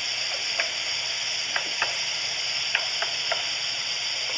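Steady hiss with about six light clicks and taps scattered through it, from cutlery and plates at a dining table.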